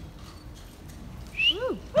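An audience member whoops "woo" once near the end, the call rising then falling in pitch, after a second or so of hushed crowd.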